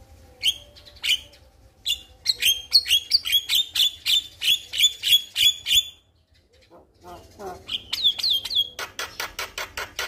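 Male Javan myna singing: two single notes, then a long run of fast repeated chirping notes, a pause of about a second, and a second run that quickens into rapid clipped notes near the end.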